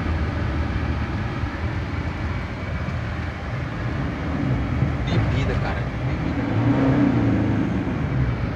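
A vehicle engine running with a steady low rumble, with faint voices mixed in.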